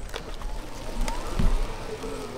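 Outdoor spectator ambience on a handheld camera microphone: a steady low rumble of wind and handling noise as the camera swings. Faint voices rise in the background, and a single low thump about one and a half seconds in is the loudest sound.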